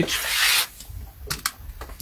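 A short rubbing, rustling noise about half a second long, followed about a second later by two light clicks.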